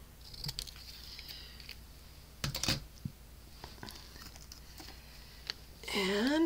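Scissors cutting through a thin strip of cardstock. About two and a half seconds in comes a short cluster of sharp clicks, followed by a few light ticks of paper and tools handled on the table.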